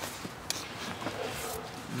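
Low, steady background hiss with a single faint click about half a second in.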